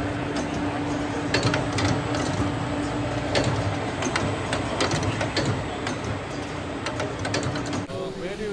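Trade-show hall machinery noise: a steady low hum under a dense din, with irregular sharp mechanical clicks and clatter. It stops abruptly near the end.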